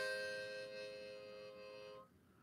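Harmonica holding a single chord of several notes in an improvised tune, fading slowly and then breaking off sharply at the end.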